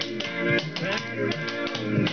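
Clogging taps on the dancer's shoes clicking rapidly on a board floor, in time with instrumental music with guitar.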